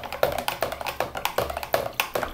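A small flag stick stirring water in a clear plastic watering container, knocking and clicking rapidly and irregularly against the plastic sides as liquid plant vitamin is mixed in.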